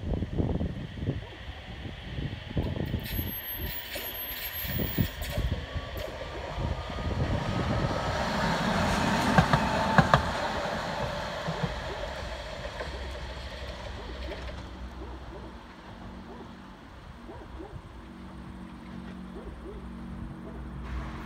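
An electric tram running along the rails, growing louder as it approaches with a faint rising whine, passing close by about halfway with a couple of sharp clacks, then fading as it moves away.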